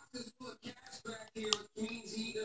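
Faint, indistinct voice murmuring in a small room, with one short sharp click about one and a half seconds in.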